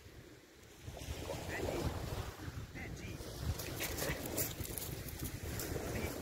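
Wind buffeting the microphone, a gusty low rumble that comes in about a second in and carries on unevenly.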